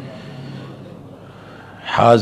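A man's quiet breathing and soft, low murmuring voice between sentences, with louder speech starting right at the end.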